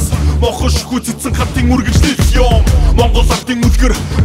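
Hip hop track: a male rapper raps in Mongolian over a beat with deep bass.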